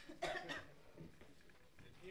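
A person coughing faintly: a short double cough near the start, then quiet room sound.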